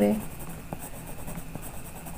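Pencil drawing short strokes on paper: quiet, light scratching with a few separate strokes.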